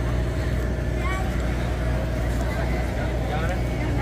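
A steady low mechanical hum, with the faint chatter of people around.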